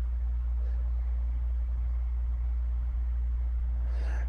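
Steady low hum with no other sound.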